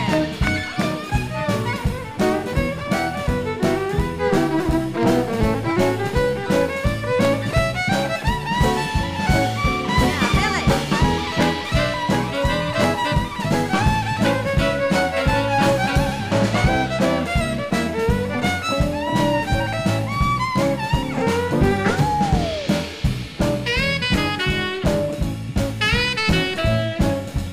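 Western swing band playing an instrumental break: saxophone and fiddle lines over a steady drum-kit beat and bass.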